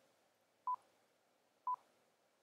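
Two short, high electronic beeps a second apart, the countdown of SlideRocket's audio recorder before recording starts.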